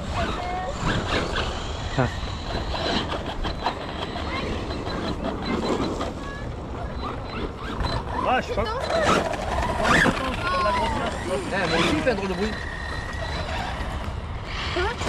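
Electric radio-controlled car driving over gravel, with wind rumbling on the microphone and voices mostly in the second half.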